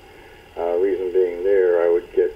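Speech: a person talking, starting about half a second in.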